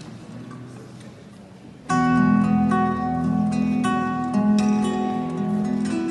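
Low room tone, then about two seconds in the band's guitars and bass start a piece: plucked, ringing guitar notes over steady low notes.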